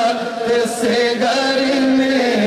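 A man singing a naat, Urdu devotional poetry in praise of the Prophet, into a microphone in a chanting style, with long held notes that waver slightly in pitch and change pitch once partway through.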